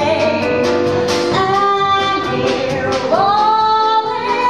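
A woman singing a show tune over a live band, sliding up into a long held note about three seconds in.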